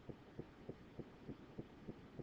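Near silence with faint, evenly spaced low thumps, about three a second.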